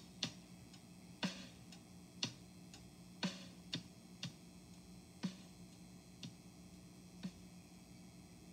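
Faint steady ticking in a tick-tock rhythm: a louder tick once a second with a softer one halfway between, over a low steady hum.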